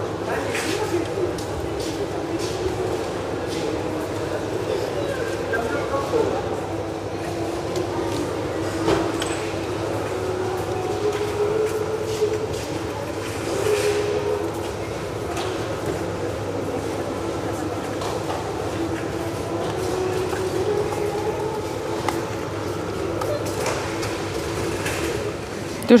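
Indoor store ambience: indistinct voices of shoppers murmuring over a steady low hum, with a few faint clicks.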